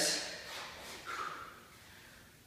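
The end of a spoken phrase fades out, then a man gives one short, hard breath about a second in as he gets down into a push-up position.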